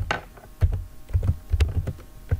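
Typing on a computer keyboard: about ten quick key clicks in an irregular run, as a line of code is typed.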